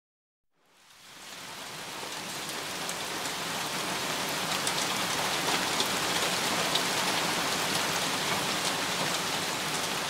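Steady rain falling, fading in about a second in and building over the next couple of seconds, with scattered drop ticks.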